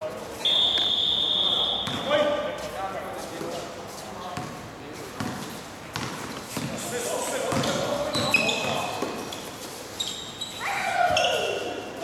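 A basketball bouncing on a hard outdoor court during a game, with players' shouts and calls. A steady high tone lasting over a second sounds near the start.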